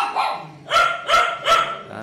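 A dog barking four short times: once right at the start, then three barks in quick succession from about three-quarters of a second in.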